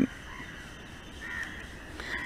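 Faint bird calls in the background, loudest a little past halfway, over low room noise.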